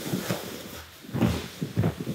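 Grapplers in gis repositioning on a mat: fabric rustling and a few soft thuds of hands and knees landing on the mat, the strongest a little over a second in and near the end.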